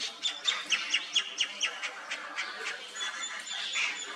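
A rapid series of short, high-pitched chirps, about four a second, each falling in pitch, followed by a thin held whistle in the last second.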